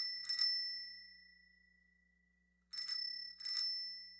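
A small metal bell rung twice in quick succession at the start and again about three seconds in, each ring clear and high and fading away slowly.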